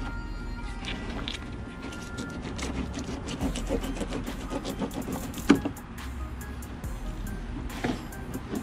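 Fillet knife cutting along a redfish's backbone, with scattered small clicks and crackles, and one sharp knock about five and a half seconds in. Background music and a low steady hum run underneath.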